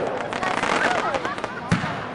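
"Tears From Heaven" consumer aerial firework: a shell's burst crackles away, with a sharp bang near the end.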